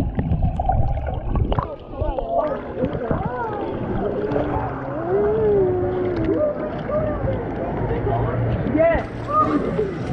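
Hot tub water churning and bubbling, heard deep and muffled through a camera dipping under and out of the water.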